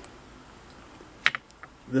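A small glass dropper bottle clicking as it is handled and set down: two sharp clicks a little past a second in, then two fainter ticks.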